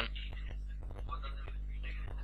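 A man's voice muttering softly and indistinctly, over a steady low electrical hum.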